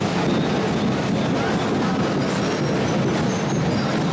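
Steady, dense din of a street parade: a drum group's drumming blurred into a continuous rumble, mixed with crowd noise.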